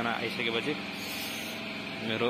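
People's voices talking over a steady background hum, with the talk in the first second.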